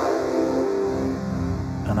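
Sonic Projects OP-X Pro II software synthesizer, an Oberheim OB-X emulation, sounding a steady held chord with its pan mono control turned fully up, so the voices are spread across the stereo field.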